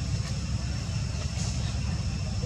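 Steady low rumble of outdoor background noise, with faint steady high-pitched tones above it.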